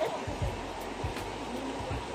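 Shallow river running over stones, a steady rushing hiss, with scattered low thumps.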